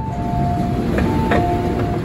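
MTR M-train door chime, two notes falling high to low, sounded twice as the doors open at the platform, over the low hum of the stopped train.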